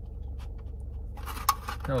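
Scratchy rustling of an aluminium foil takeout tray being handled and its lid fitted on, with one sharp click about a second and a half in, over a low steady hum.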